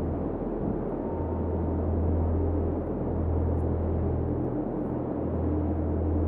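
A low, continuous rumble that swells and eases every second or two, with a faint hiss above it.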